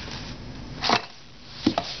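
A short rustling burst about a second in, then two sharp knocks in quick succession near the end.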